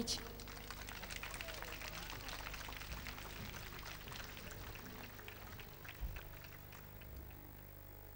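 Audience applauding, a thick patter of claps that thins out as it goes on, with a single low thump about six seconds in.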